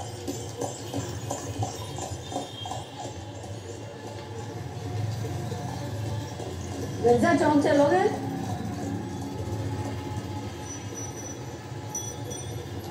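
A horse-drawn tonga passing, with the horse's hooves clip-clopping in an even beat over a steady low hum. A voice speaks briefly about seven seconds in.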